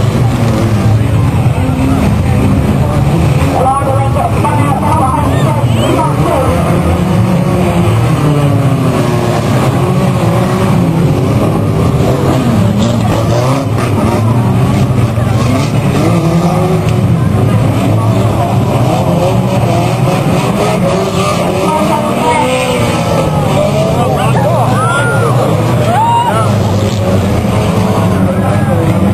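Several banger-racing cars' engines running and revving together on the track, pitches rising and falling over a steady low rumble.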